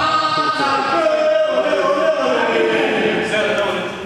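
Several voices singing together without instruments, in long held notes that slide slowly in pitch.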